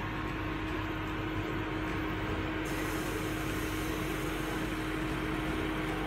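A steady machine hum, like a fan running, with one constant low drone held through.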